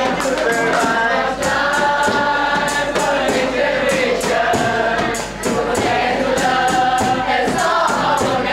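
A group of young voices singing a dikir barat song together, with a regular percussive beat running under the singing.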